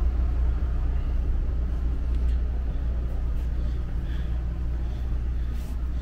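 Steady low engine rumble on board a 50-foot motor cruiser, even and unchanging.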